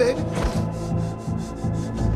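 Tense film score: a low sustained drone under a quick, scratchy rhythmic percussion of about four strokes a second, with a single low thud about half a second in.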